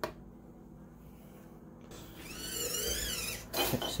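Small servo motor whining for about a second as it turns the sorter's bin to the glass position, its pitch wavering up and down, then a short clunk as the movement ends.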